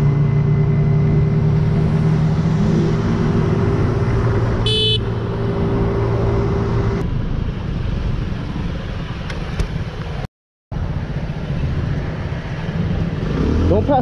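Motorcycle engine running under a rider, with wind and road noise; a short, high horn beep comes about five seconds in. The sound cuts out completely for a moment about ten seconds in.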